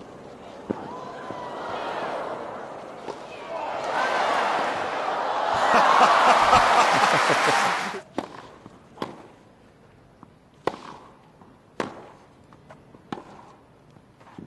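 Tennis ball struck by rackets as crowd noise builds into loud cheering and applause, which cuts off suddenly about eight seconds in. Then the sharp pops of racket strikes in a new rally, roughly a second apart.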